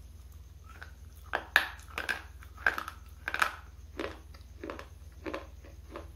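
A hard, dry bar being bitten and chewed right at a lapel microphone. Several loud, sharp crunches come in the first three and a half seconds, then softer chewing crunches about every two-thirds of a second.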